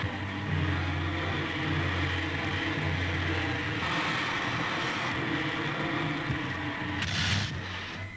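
Film sound effect of a rocket ship's engine: a steady drone with a low hum under a hiss as the ship comes in to land. A brief, brighter rush of hiss comes near the end.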